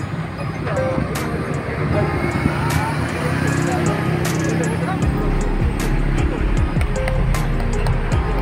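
Busy outdoor ambience: voices chattering and music playing over traffic noise. A low rumble joins about five seconds in.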